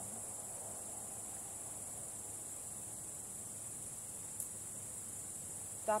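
A steady, high-pitched chorus of crickets, with a single faint click about four and a half seconds in.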